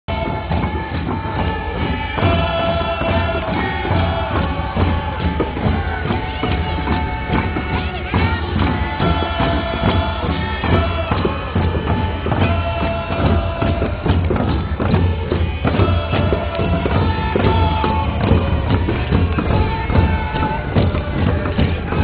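Northwest Coast Native hand drums, round hide frame drums, beaten steadily by a marching group, with a group chanting over the beat.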